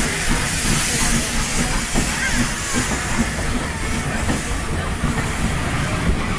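Steam hissing from a Hunslet Austerity 0-6-0 saddle-tank locomotive as it pulls a train away, the hiss fading as the carriages roll past, over the rumble and irregular knocks of wheels on the rails.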